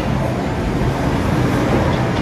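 Steady, loud background din of a billiard hall, an even noise with no clear single source.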